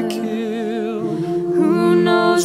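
Mixed-voice a cappella ensemble singing sustained wordless chords with vibrato; the harmony changes about a second and a half in as the next phrase begins.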